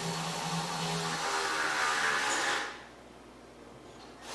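Steady mechanical noise, a hiss with a faint hum, that cuts off about two and a half seconds in.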